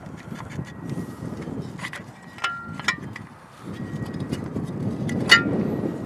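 Metal jig clinking against the extruded arm of a DeWalt compact miter saw stand as it is fitted into place: a few short clinks with a brief ringing tone, the sharpest near the end, over a steady low rustle.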